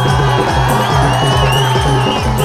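Bundeli folk music with harmonium and a steady drum beat, with a crowd cheering over it.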